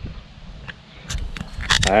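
Handling noise from a camera being carried, with a low uneven rumble of wind on the microphone and a few light clicks, before a man starts speaking near the end.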